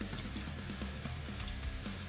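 Hot oil in an electric deep fryer sizzling and crackling steadily around a freshly dropped battered burrito, with background music underneath.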